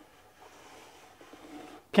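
Quiet room tone with only a faint low hiss; a man's voice begins right at the end.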